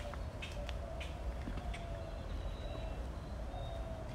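Outdoor background noise with no clear single source: a steady low rumble, a faint steady tone and a few faint scattered clicks.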